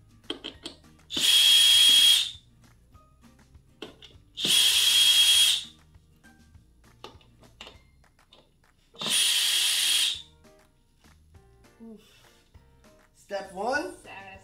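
DeWalt DCD791 brushless cordless drill/driver with a Phillips bit backing the screws out of a wooden chair's seat. It runs three times for about a second each, with a steady high motor whine, and there are small clicks and knocks of handling between the runs.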